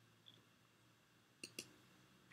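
Near silence broken by two faint clicks about a sixth of a second apart, late on: a computer mouse clicked to advance the lecture slide.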